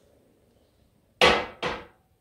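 A ceramic mug set down on a glass-topped side table: two sharp knocks in quick succession a little past the middle, the first the louder.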